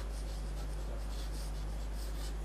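Chalk scratching on a chalkboard as words are written out by hand, over a steady low hum.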